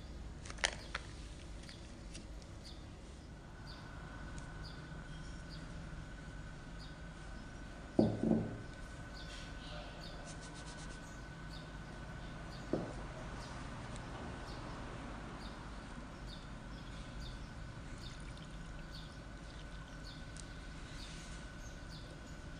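Quiet kitchen room tone with a faint steady high whine, broken by a few sharp knocks of cookware being handled on the table. The loudest is a double knock about eight seconds in.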